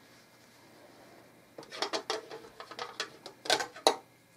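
Rustling and light scraping of a wool coat's fabric being handled as a sewing thread is drawn through it by hand. It begins about one and a half seconds in, in short irregular scrapes, and is loudest near the end.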